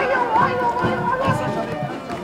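Band music with wind instruments playing a wavering melody over a steady drum beat about twice a second, with voices mixed in.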